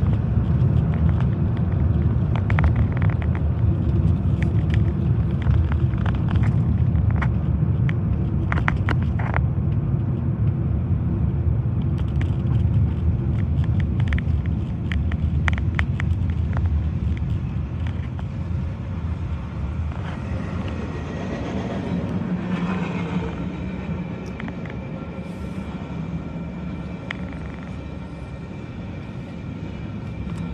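Road noise inside a moving car, fading as the car slows and stops at a railroad crossing, while a freight train passes through the crossing. About two-thirds of the way in, steady high ringing tones come in and hold.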